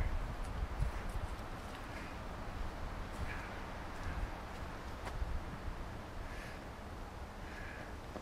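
Footsteps crunching on dry leaf litter, with a steady low rumble of wind on the microphone and a few faint clicks.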